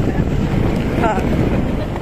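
Heavy wind rumble on the microphone of a moving motorcycle, with the motorcycle and its tyres on a gravel track running underneath.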